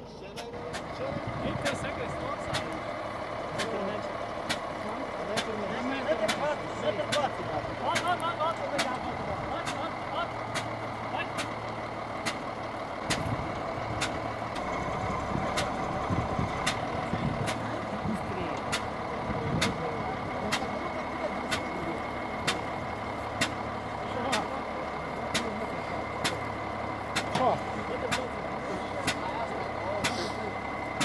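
Wheel loader's diesel engine running as the machine works, with a steady faint high whine and a sharp regular click a little more than once a second.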